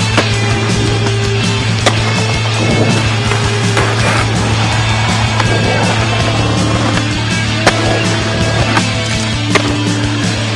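Skateboards rolling on pavement, with several sharp clacks of the board hitting and landing, over a music soundtrack with a steady low bass.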